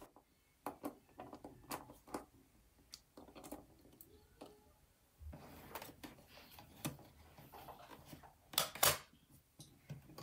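Faint scattered clicks and scrapes of small parts being handled inside an opened Mac mini's aluminium case, with a louder pair of sharp scrapes near the end.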